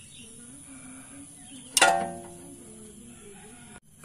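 A single sharp metallic clank about two seconds in, ringing on briefly, as the socket wrench on the stabilizer link nut knocks against metal.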